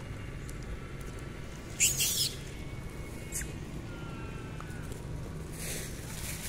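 A macaque's brief, high-pitched squeal about two seconds in, over a steady low background hum.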